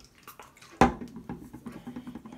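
A single loud, sharp knock or clap just under a second in, with fainter taps and rustling around it.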